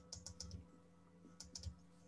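Faint keystrokes on a computer keyboard in two short bursts: about five quick key presses, then a pause, then about four more.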